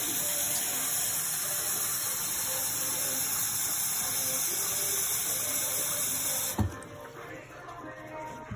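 Tap water running from a sink faucet into a plastic bowl as it fills, a steady rush that cuts off suddenly with a thump near the end.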